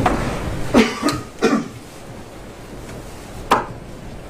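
A person coughing: three short coughs in the first second and a half, then one more about three and a half seconds in.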